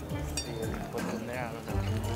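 Background music with a steady low bass line, and a faint voice briefly in the second half.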